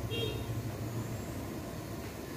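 Steady low rumble of a gas burner under a wok of frying chicken, with a short high metallic ring just after the start as the spatula strikes the wok.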